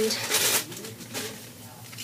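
A short rustle of a paper gift-card holder being handled, about half a second in, then quiet handling.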